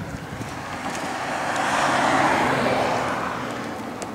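A car driving past, its tyre and road noise swelling to a peak about halfway through and fading away again.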